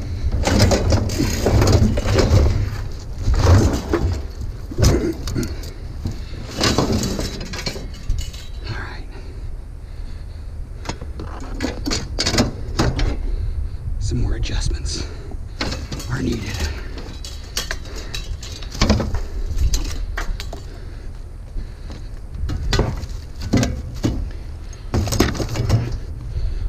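A heavy, rusted steel barbecue grill being shoved and slid onto a trailer: irregular metal knocks, clanks and scrapes as it is worked into place.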